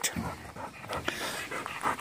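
Dog panting quietly, short quick breaths several times a second.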